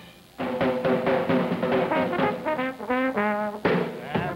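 Chicago-style jazz band playing: trumpets, trombone and clarinet in ensemble over drums and piano. The band comes in after a brief lull in the first half second, and a drum hit stands out near the end.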